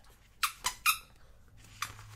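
Three short, sharp squeaks of sticker paper being handled, as a sticker is peeled off its glossy backing sheet in a sticker book.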